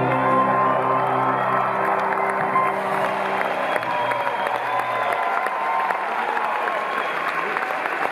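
A rock band's last held chord rings out and fades away over the first few seconds, while a concert audience applauds and cheers, the applause carrying on alone after the music dies.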